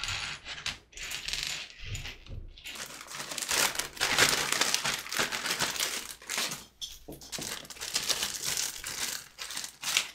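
Small plastic Lego pieces clicking and rattling against one another on a wooden desk as hands pick through them. From about the middle, there is a louder crinkling rustle of a plastic bag being rummaged through, with pieces clicking inside.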